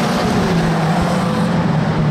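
Several saloon stock car engines running at race speed as the pack circles the oval, a steady, loud mix of engine noise with a held low engine note.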